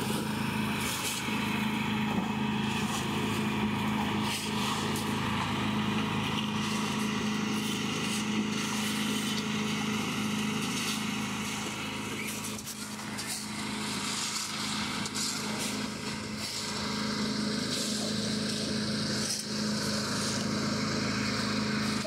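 Portable concrete mixer's small gasoline engine running steadily at one speed, turning the drum. Occasional rattles and knocks come as buckets of gravel and sand are tipped into the drum.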